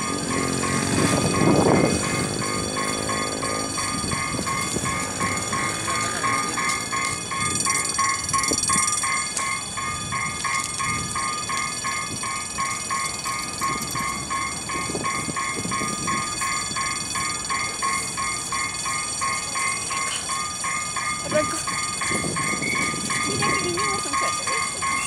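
Level-crossing warning bell ringing in a fast, steady repeating pattern throughout, as a diesel-hauled train approaches. A train horn sounds for a few seconds near the start.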